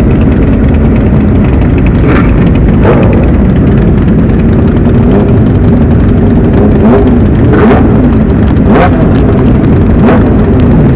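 Many sport motorcycle engines idling together in a tightly packed group, a loud steady drone. Throttles are blipped in short revs about five times, around two and three seconds in and then three times near the end.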